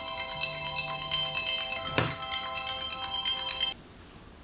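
Smartphone alarm ringtone playing a chiming melody, cut off suddenly near the end.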